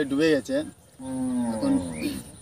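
A man speaks briefly. About a second in, a single long voice-like call follows, held for about a second and slowly falling in pitch.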